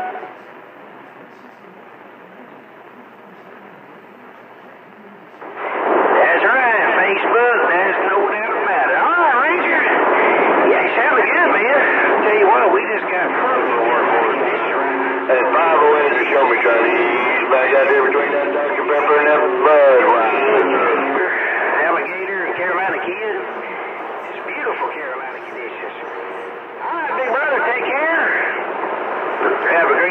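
CB radio receiver on channel 28 with thin, narrow-band sound. For about five seconds it gives only steady static hiss on an open channel. Then radio voices come in loud and run on, several seemingly talking over one another and hard to make out.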